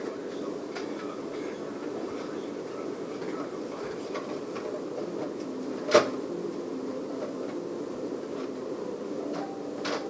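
Small clicks and rattles of medicine bottles and syringes being handled at a shelf, with one sharp click about six seconds in, over a steady low hum in the room.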